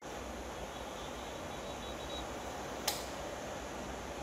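Steady in-car background noise picked up by a dashcam in slow city traffic: a low engine and road hum under an even hiss, with one sharp click about three seconds in.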